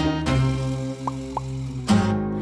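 Intro music: a held chord, with two short rising blips a little after a second in and a new note struck near the end.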